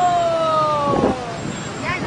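Busy motorbike and car traffic at a city intersection. A long horn note falls slowly in pitch over about a second and a half, followed by shorter sounds that may be voices.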